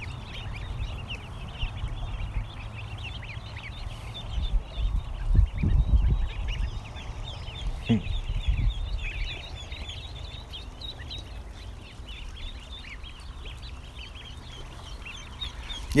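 A flock of ducklings and goslings peeping: many overlapping short, high chirps throughout. There is some low rumbling on the microphone around five to six seconds in and a short falling call near eight seconds in.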